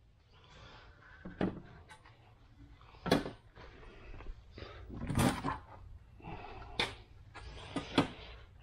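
A handful of sharp knocks and clunks from plywood door panels and a metal trim strip being handled and set against each other, spaced a second or two apart, loudest about three and five seconds in.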